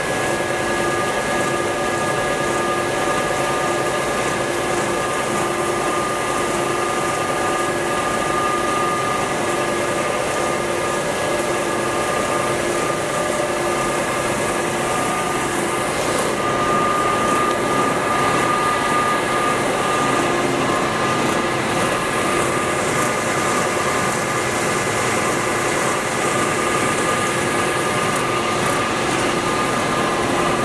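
Timesaver 37-inch single-head wide belt sander running steadily, a continuous machine hum with several steady tones. It grows slightly louder about halfway through.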